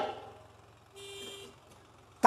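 A faint, steady tone lasting about half a second, about a second in, during a quiet pause between stretches of a man's speech.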